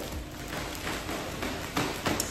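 Clear plastic garment bags crinkling and rustling as clothes are handled, with irregular small crackles.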